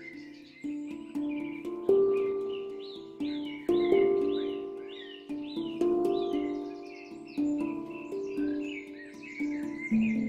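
Handpan played with the hands in a slow melody, one or two struck notes a second, each ringing and fading. Birdsong runs behind it, with a bird repeating a short chirping phrase several times in the middle.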